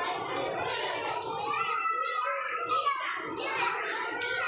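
A crowd of young children chattering and calling out at play, many voices overlapping; one high child's voice rises above the rest from about two seconds in.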